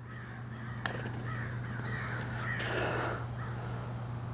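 A blade putter strikes a soft golf ball once about a second in, a single short click, followed by a faint rough noise for a couple of seconds.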